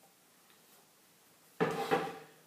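Near silence, then, about one and a half seconds in, a single sharp knock with a brief ring as the blender jar is set down on its base.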